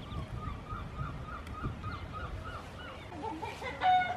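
Birds calling: a run of short, evenly repeated chirps about three a second, then, about three seconds in, a louder string of quick honking calls.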